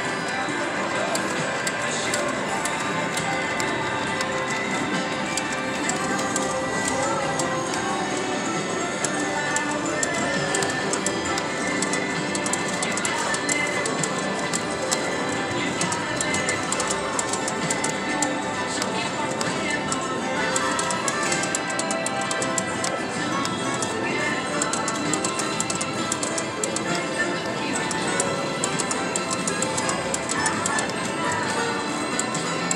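Casino floor din: steady electronic jingles and tones from slot machines with voices mixed in. Over it, the rapid ticking of a video slot's reels running through repeated spins.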